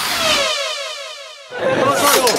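A falling-pitch sweep sound effect edited in over a graphic, fading out over about a second and a half. Crowd voices come back in near the end.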